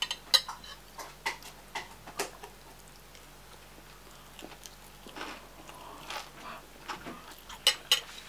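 Metal spoon and fork clinking and scraping against a bowl: several sharp clicks in the first two seconds and a couple more near the end, with softer chewing sounds in between.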